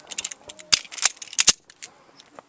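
Beretta PX4 9mm pistol firing four quick shots, the last two close together, with no ring from the steel plate targets: misses.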